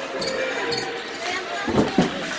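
Ice hockey rink sounds: voices, with a dull thud near the end and then a sharp knock.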